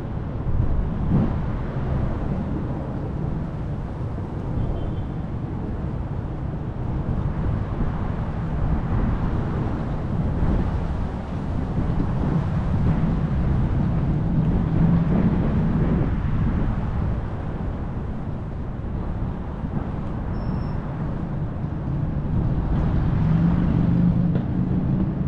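Steady low rumble with a droning motor hum that swells around the middle and again near the end.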